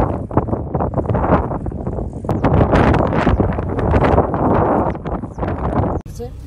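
Wind buffeting the microphone: a loud, gusty low rush that rises and falls in strength.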